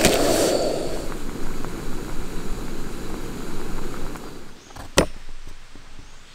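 Gas camping stove burner running steadily under a pot of water coming to the boil, fading out over the first four seconds or so. Near the end comes a single sharp knock of a knife against a plastic cutting board.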